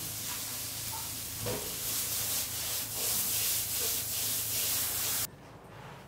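Frying pan sizzling steadily as onion, tomato and dried mealworm and fly larvae fry. The sizzle cuts off suddenly near the end.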